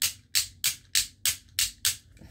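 A person making a rhythmic "tss" mouth sound effect: seven short hissing bursts, about three a second.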